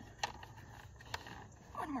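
Faint handling noise from a plastic infant car-seat base and its lower-anchor strap being worked by hand, with two small clicks; a woman's voice starts near the end.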